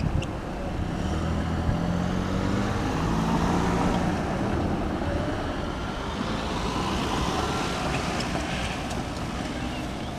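Road traffic driving past: a vehicle goes by close at the start, and engine and tyre noise swells over the next few seconds before easing off.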